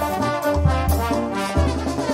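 A brass band playing: trumpets and trombones carry the melody and chords over sousaphone bass notes that change about every half second, with drums beneath.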